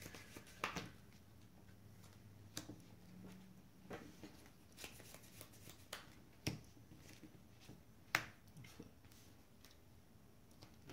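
Cardfight!! Vanguard trading cards being handled on a playmat: drawn from the deck and set down, a scattering of soft clicks and slaps with the sharpest about eight seconds in.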